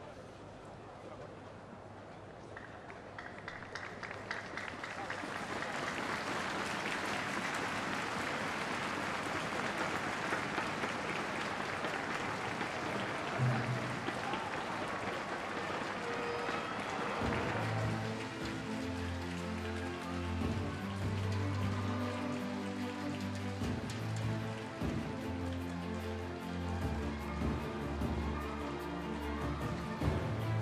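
Arena crowd clapping, swelling from a few seconds in, then giving way about two-thirds of the way through to music with a steady bass line.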